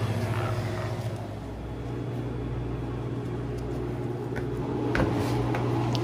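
Steady low hum of running kitchen refrigeration equipment, with a couple of faint clicks about four and five seconds in.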